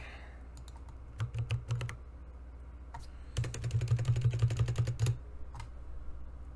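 Typing on a computer keyboard: a few keystrokes about a second in, then a quick, steady run of typing from about three and a half to five seconds in, as a search is entered.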